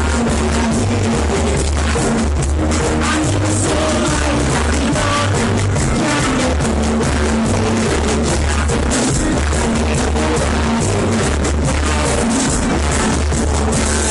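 Live roots reggae band playing loud, with a deep bass line changing notes every second or so, heard through a phone's microphone.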